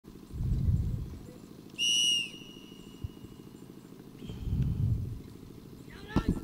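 A single steady, high whistle blast lasting about half a second, about two seconds in. Around it are two low rumbling swells over a steady low hum.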